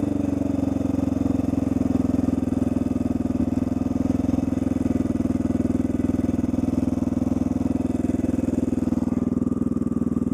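Honda XR600R's big single-cylinder four-stroke engine running steadily under way, with a fast even thump. Near the end the higher rush thins out as the bike slows to a stop on the shoulder, and the engine keeps running.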